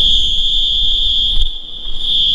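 One long, steady, high-pitched whistle blast that starts sharply and cuts off after about two and a half seconds, over the low rumble of a train running into the platform.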